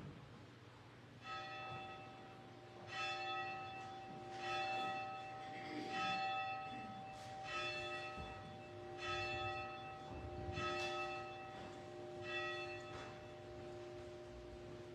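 Church bell tolling, struck eight times at about one stroke every second and a half, each stroke ringing on into the next.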